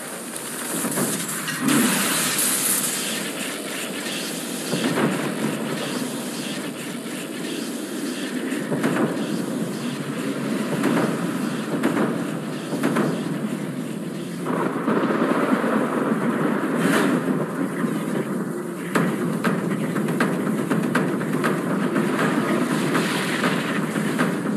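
Cartoon sound effects of a fiery energy blast: a continuous loud rushing, rumbling noise broken by repeated sharp cracks and bangs, growing louder about halfway through.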